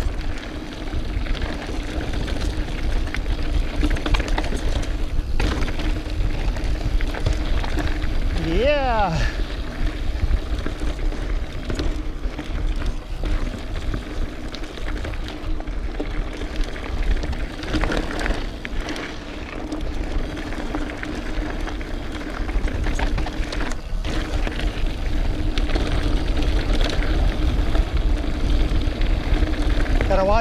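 Mountain bike riding fast down a rough dirt trail, heard from a bike-mounted camera: wind rumbles on the microphone, the trail's bumps set off knocks and rattles, and a steady hum runs underneath. A rider's brief shout rises and falls about eight seconds in.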